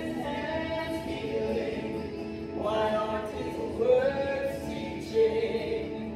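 Singing of a Christian worship song, phrases of held sung notes with musical backing.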